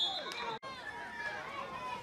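A referee's whistle blast, a single steady shrill tone, cutting off about half a second in; after a brief dropout, spectators' voices and shouts carry on.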